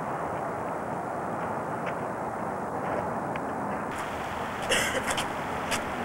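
Steady outdoor background noise picked up by a camcorder's microphone, with a few short clicks or scuffs about five seconds in.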